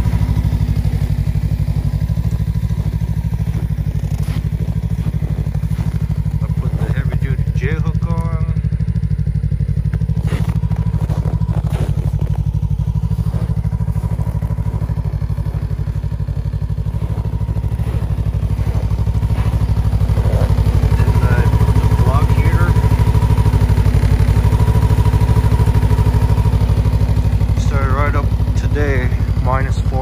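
Ski-Doo Tundra LT snowmobile's Rotax 600 ACE three-cylinder four-stroke engine idling with a steady, even low rumble.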